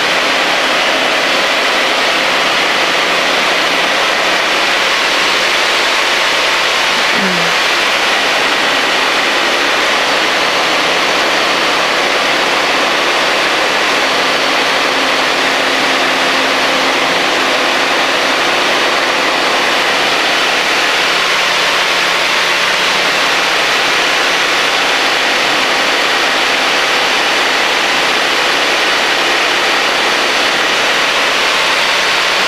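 High-wing microlight aircraft in steady cruise: its engine and propeller drone evenly under a heavy rush of airflow noise.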